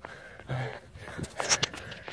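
A runner breathing hard and sniffing while jogging, with a short grunt-like hum about half a second in and a few brief soft knocks.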